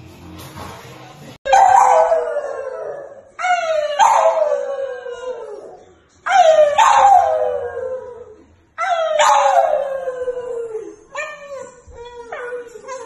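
French bulldog howling: four long calls, each starting high and sliding down in pitch over about two seconds, then a run of shorter calls near the end.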